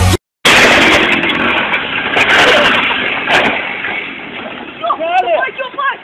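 Motorcycle with a sidecar pulling away, a loud rough noise that fades over about four seconds. People's voices calling out come in near the end.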